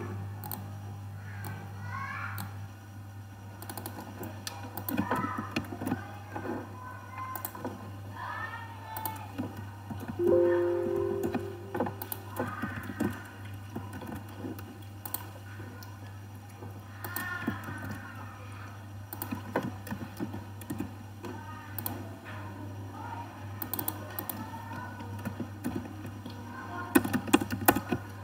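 Computer keyboard keys and mouse clicks tapping irregularly as numbers are typed in, over faint background music and a steady low hum, with a brief louder tone about ten seconds in.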